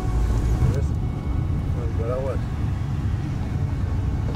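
Steady low rumble of road and engine noise inside a moving car's cabin, with a faint voice briefly about two seconds in.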